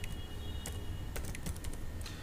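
Typing on a computer keyboard: a handful of separate keystroke clicks at an uneven pace, over a steady low hum.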